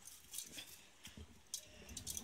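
Soaked rice being tipped into a pot of cooked vegetables: a few faint, soft clicks and patters as it lands.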